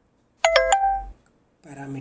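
A short chime of two or three quick bell-like notes, starting about half a second in and dying away within a second.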